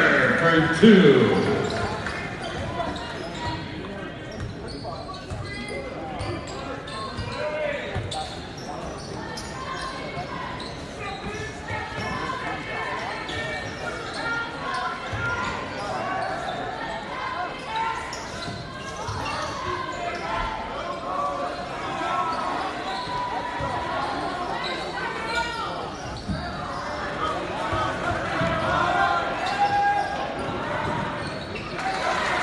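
Basketball game sounds in a large gym: the ball bouncing on the hardwood floor amid spectators' voices and calls, with a louder burst of voices in the first second or two.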